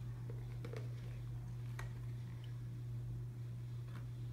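Steady low hum of room tone, with a few faint soft clicks and squelches as a plastic bottle of white school glue is squeezed out into a plastic bowl.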